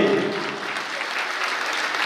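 Audience of listeners clapping their hands.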